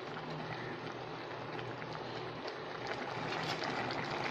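Snake gourd kootu simmering in an aluminium kadai on a gas stove: a steady hiss with faint small pops.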